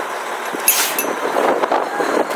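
Vehicle engine noise from a truck-and-car tug of war, with a brief high-pitched squeal less than a second in.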